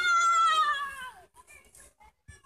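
A child's long, high-pitched squeal that slowly falls in pitch and dies away about a second in, followed by faint short sounds.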